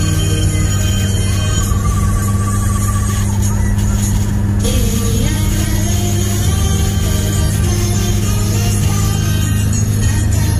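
Music playing from a car's dashboard stereo, heard inside the cabin over the steady low rumble of the car driving.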